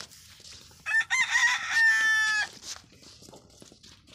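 A rooster crowing once, loud and close: a few short wavering notes, then one long held note.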